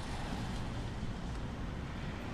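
Steady low road and engine rumble heard inside the cabin of a moving car.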